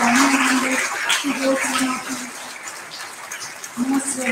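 Audience applause dying away over the first couple of seconds, with a woman's voice speaking over it in short phrases.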